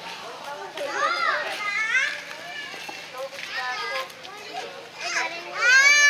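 Young children's high-pitched voices calling out in short bursts, with one loud, drawn-out high cry from a toddler near the end.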